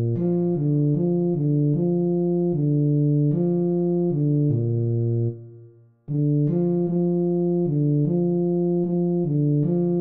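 A tuba part played back by notation software at half speed: a steady line of short, separate low notes at an easy practice tempo. About five seconds in there is a pause of about a second for the rests, and then the line goes on.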